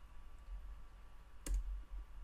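A single sharp click of a computer mouse about one and a half seconds in, the click that advances the presentation slide, over a faint low hum.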